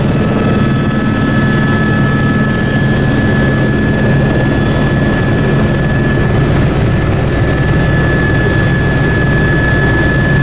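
Helicopter engine and rotor noise heard from inside the cabin in flight: a loud, steady drone with a thin, constant high whine over it.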